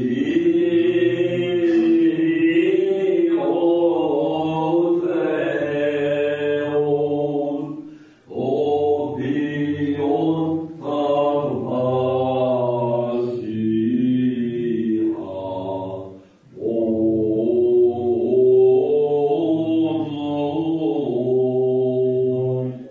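Greek Orthodox Byzantine chant: a man's voice singing long, slowly ornamented phrases over a steady low held note, with short breaks between phrases about 8, 10 and 16 seconds in.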